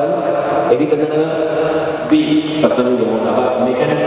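A man speaking into a microphone, amplified over a PA in a large, echoing hall.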